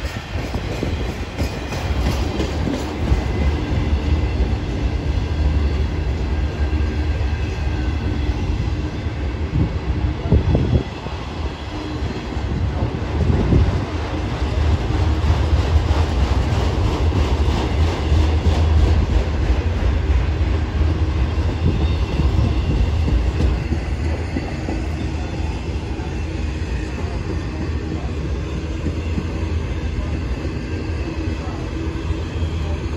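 Freight train of autorack cars rolling slowly past close by: a steady rumble and rattle of steel wheels on the rails, with some clickety-clack from the passing trucks.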